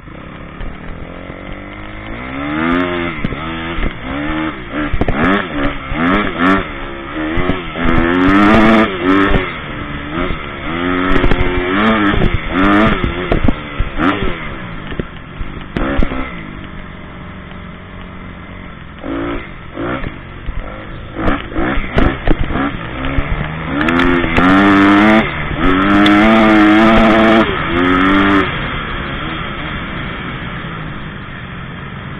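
Honda CRF250 single-cylinder four-stroke motocross bike engine heard on board, revving up and dropping back again and again as the rider works the throttle around the track. There are two long, loud full-throttle pulls, one before the middle and one near the end, with a quieter lull between them and occasional sharp knocks from the bike over the rough ground.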